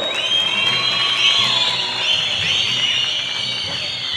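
A large crowd cheering and whistling, with many overlapping whistles rising and falling in pitch, loud and steady throughout, in answer to a line from the speaker.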